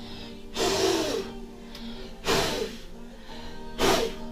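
Three short, rushing puffs of breath, a person blowing bath foam off her hands, over background music with steady held notes.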